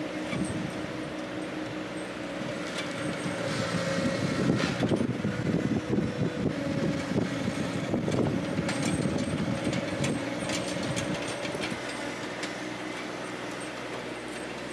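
Tractor engine running steadily, with a louder, rougher stretch in the middle for several seconds before it settles back to an even hum.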